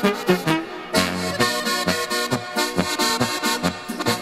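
Instrumental passage of an Oberkrainer-style polka played by a folk quintet, the accordion leading over a steady, even oom-pah beat from bass and guitar.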